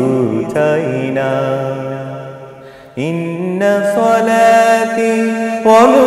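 A man singing a Bengali Islamic song (gojol) in long held, melismatic notes. One phrase fades out and a new one begins about three seconds in.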